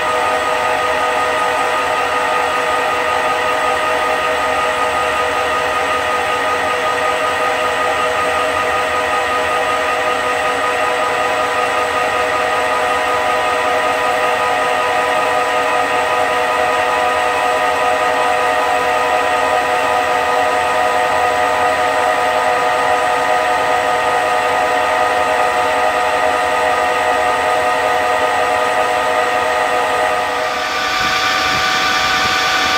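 CNC lathe turning a workpiece, its spindle running and the tool in the cut, giving a steady whine made of several held tones over a hiss of cutting noise.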